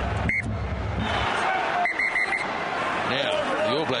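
Stadium crowd noise at a rugby match. A short high tone sounds about a third of a second in, and four quick high pips come around two seconds in. A man's voice starts near the end.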